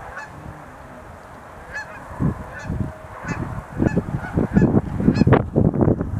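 Sandhill cranes calling: a series of short, rolling, rattled calls repeated every half second or so. From about midway a low rumble grows louder beneath the calls.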